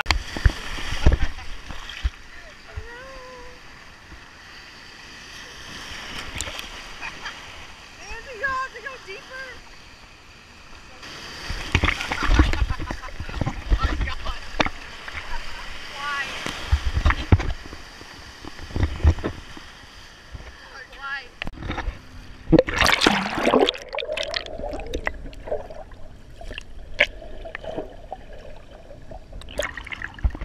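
Small sea waves breaking and splashing over a waterproof camera at the waterline: bursts of rushing, sloshing water several times, loudest about a second in and again around the middle and two-thirds through. A voice calls out now and then between the splashes.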